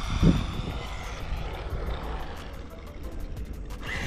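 Losi NASCAR RC car with a Furitek Scorpion 5600kV brushless motor driving up the street and past, its motor giving a thin high whine over the rumble of small tyres on asphalt. A short loud thump comes about a quarter second in.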